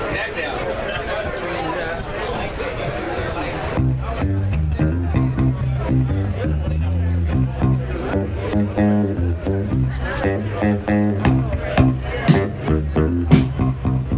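Crowd chatter, then about four seconds in a bass guitar starts a groovy bass line of repeated low notes, the opening of a live band song. Other instruments and sharp hits join in toward the end.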